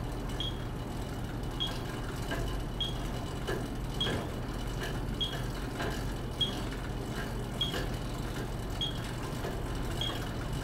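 Metronome beeping at 50 beats per minute, one short high beep about every 1.2 seconds, setting the pedalling cadence for a cycle ergometer test. A steady low hum runs underneath.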